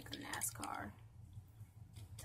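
A person's low, whispered voice for about the first second, then a quiet room with a faint steady low hum.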